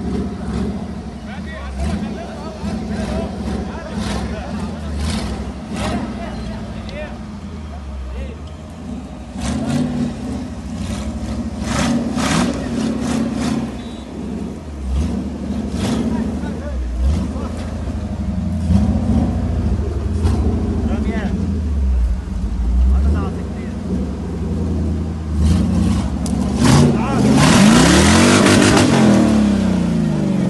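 Jeep Wrangler YJ's engine revving in repeated bursts as it crawls over loose rock and dirt, pitch rising and falling with the throttle. It is loudest near the end, with one hard rev that rises and falls over a rush of noise.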